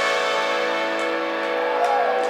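A band with trumpet, saxophone, trombone and electric guitars holding a sustained final chord that rings on steadily after a last hit.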